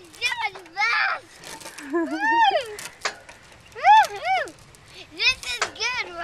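A young child's high-pitched voice making wordless calls and squeals, each call rising and falling in pitch, about seven of them spread across the few seconds.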